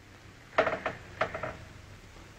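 Two short vocal sounds about half a second apart: a young woman straining with effort as she tries to move her paralysed foot.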